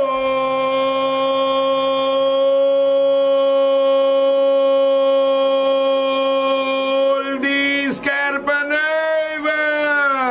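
A football commentator's long drawn-out goal call, a single "gooool" held on one steady pitch for about seven seconds, then wavering up and down in pitch near the end.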